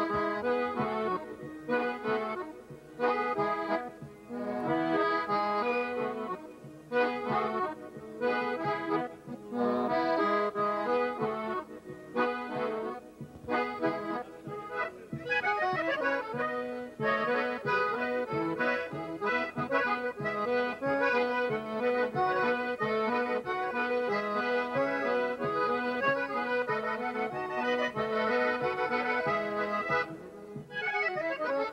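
Two piano accordions playing an instrumental piece together live. The first half is in short, detached phrases with brief gaps. About halfway there is a falling run, and after it the playing flows on continuously.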